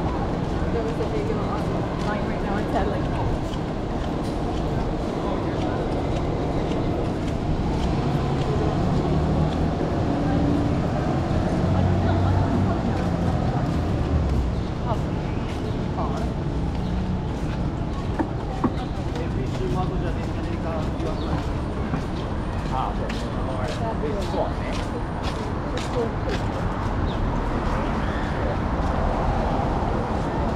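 City street ambience: traffic running along the avenue and passers-by talking. A vehicle's low engine rumble swells and fades about halfway through.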